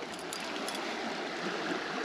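Small creek running steadily, a continuous rush of moving water.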